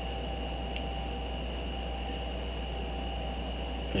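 Steady low electrical hum and hiss with a thin high-pitched whine running through it, and a single faint click just under a second in.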